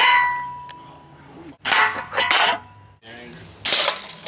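Target shooting at stacked aluminium beer cans: a sharp crack at the start with a metallic ring that fades over about a second, then further sharp bursts in the middle and near the end.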